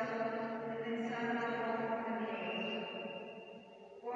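Voices chanting a slow devotional melody in long held notes, the sound fading away over the last second.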